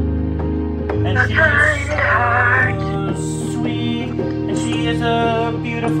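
Electronic keyboard playing sustained chords, the bass note changing every couple of seconds, with a wavering melody line over them.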